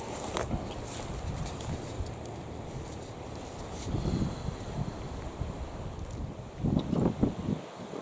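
Wind buffeting the camcorder's microphone: a steady low rumble that swells about halfway through and again near the end.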